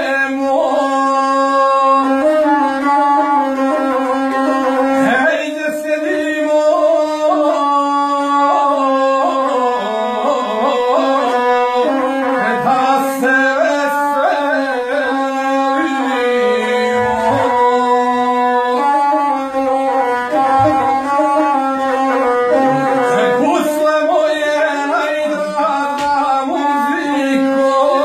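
Gusle, the Serbian single-string bowed folk fiddle, playing a wavering, ornamented melody over a steady low note, with a man singing in the traditional epic style.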